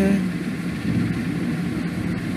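A steady low mechanical hum, like a motor or engine running.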